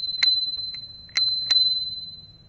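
Handlebar-mounted dome bicycle bell rung four times in two quick pairs. Each strike is a clear, high ring that fades slowly, and the last one carries on after the others stop.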